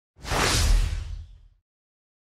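A single whoosh sound effect over a deep bass boom, the sting of an animated logo intro; it swells quickly and fades out by about a second and a half.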